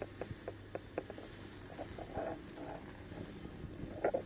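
Steady low hum inside the car of an Orona-Krakdźwig passenger lift, with a run of light clicks in the first second or so and a few faint knocks about two seconds in.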